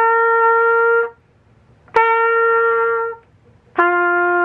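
Trumpet playing open-valve notes: two held notes of about a second each on the same higher pitch (the C, lips tightened), then a lower note (the G, lips relaxed) starting near the end. Each note starts crisply with a tongued attack and stops cleanly, with short gaps between.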